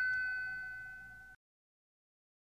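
A single bell-like chime note from a closing jingle ringing out and fading steadily, then cut off suddenly about a second and a half in.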